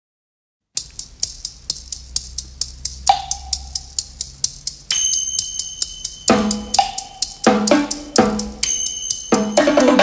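Instrumental intro of a pop song: a drum kit starts a steady beat of about four strokes a second after a moment of silence. About halfway in, sustained high tones join, then bass and chords, and the music builds toward the vocal.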